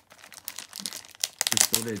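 Clear plastic packaging film crinkling as it is handled in the hands, with a louder burst of crackling near the end.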